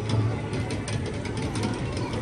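Small kiddie carousel turning: a steady low motor hum with a scatter of light clicks.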